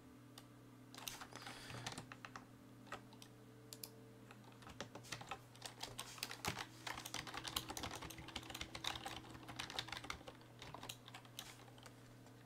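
Typing on a computer keyboard: a short run of keystrokes about a second in, then steady rapid typing from about five seconds in until near the end.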